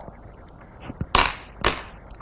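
Go stones being set down on a wooden Go board: a faint tick, then two sharp clacks about half a second apart.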